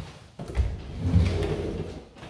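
A hollow bifold closet door is pulled open, its panels folding along the track with a low rumble and rattle that starts sharply about half a second in. A knock comes at the very start.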